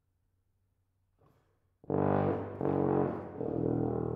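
Solo tuba: after a faint breath about a second in, two loud notes are played, then a lower note is held past the end, ringing in the hall's reverberation.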